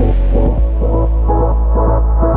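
Background electronic music: a deep, steady bass drone under a quick pulsing beat of short synth notes.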